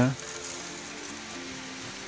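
Steady outdoor background hiss with faint sustained musical tones underneath, after a spoken word ends at the very start.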